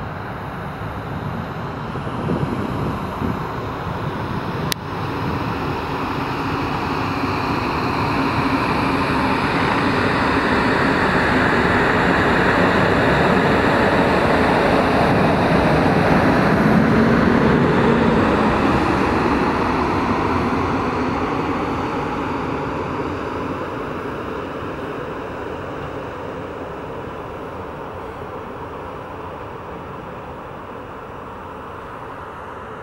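EP09 electric locomotive passing at close range: the running noise of its wheels on the rails swells to a peak about halfway through and then fades as it draws away. A single sharp click comes a few seconds in.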